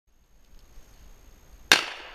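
A single gunshot near the end, a sharp crack followed by a short echoing tail, fired close to a gun dog in training.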